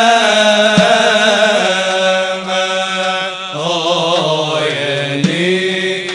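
Arabic devotional chant (inshad) sung by male voices: a lead voice holds long notes and turns a wavering ornamented run about two-thirds of the way in, over a steady low drone. A couple of sharp clicks fall under the singing.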